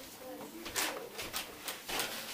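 Denim jeans being handled and smoothed flat by gloved hands, giving a few brief rustles and brushes of fabric and paper tags.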